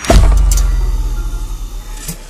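A sudden deep boom that drops in pitch, then a low rumble that slowly fades: a cinematic impact sound effect for a logo reveal.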